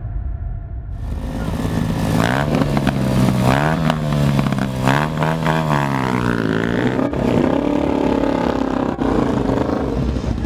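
A small motorcycle engine starts about a second in and is revved hard up and down several times in quick succession. It then runs at a higher, fairly steady rev.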